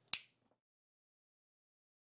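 A single sharp finger snap just after the start.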